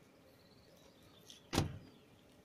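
A single sharp thump about one and a half seconds in, dying away quickly, over a faint steady outdoor background.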